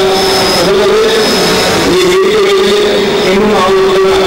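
A man's voice through a microphone and loudspeakers, holding long, wavering pitched notes with a few glides, as in singing or chanting.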